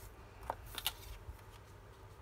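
Hands handling and pressing small paper die-cuts onto a paper page: faint paper rustling with two brief crisp paper sounds, one about half a second in and a sharper one just under a second in.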